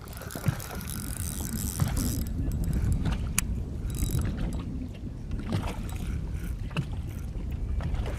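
Spinning reel being cranked as a hooked bass is played, a light mechanical whir with a few sharp clicks, over steady wind and water noise on an open boat.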